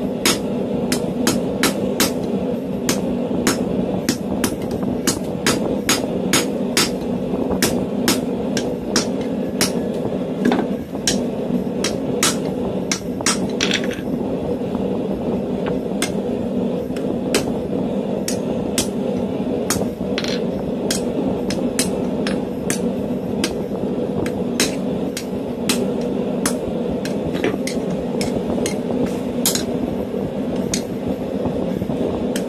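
Hand hammer striking red-hot steel tong jaws on a steel anvil in a steady run of blows, about two a second, a few ringing briefly. A constant low rumble runs underneath.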